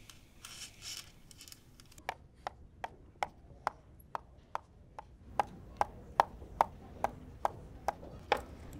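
A pen tapping on a tabletop in a steady rhythm of about two or three taps a second, starting about two seconds in.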